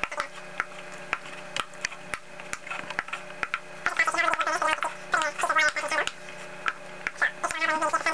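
Indistinct voices talking in the background, loudest about halfway through and again near the end, over a steady low hum with scattered small clicks.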